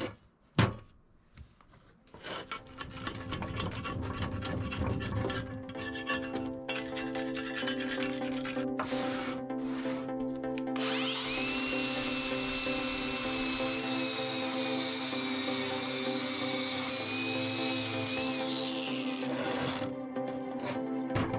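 Background music, with dirt being scraped and brushed by hand off a steel excavator thumb in the first half. About halfway through, an angle grinder with a wire-wheel brush starts up with a steady high whine, runs for about eight seconds and spins down near the end.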